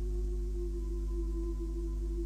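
A steady low drone of several held tones with a hum underneath, unchanging throughout, on a transfer from an old cassette tape; no voice.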